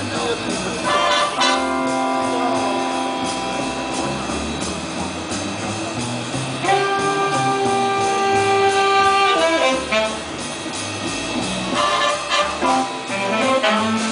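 High school jazz big band playing live, with saxophones, trumpets and trombones. The horns hold long chords twice, with shorter accented figures in between.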